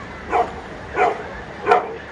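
A dog barking three times in the background, evenly spaced about two thirds of a second apart, the last bark the loudest.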